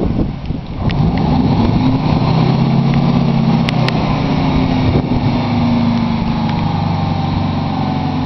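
Fire truck engine running steadily, with a low even note that steadies and strengthens about a second in.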